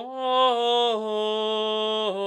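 A solo voice singing unaccompanied Gregorian chant, holding one vowel through a melisma: the note steps up just after the start and back down about a second in.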